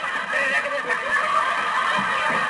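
Studio audience laughing loudly at a comic dance, with band music underneath.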